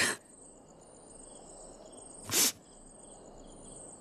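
Crickets chirping steadily in the background, with one short, sharp breath sound a little over two seconds in.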